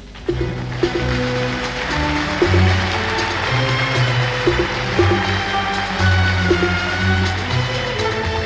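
Audience applause breaks out suddenly just after the sung phrase ends, over an Arab orchestra of violins, cellos and double bass playing an instrumental passage with low sustained notes and repeated short struck notes.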